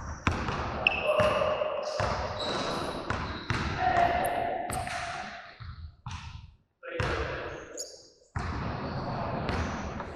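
People's voices with repeated thuds.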